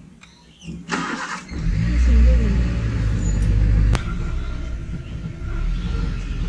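Safari vehicle's engine rumbling low and steady, coming in about a second and a half in and loudest over the next couple of seconds, with a sharp click about four seconds in.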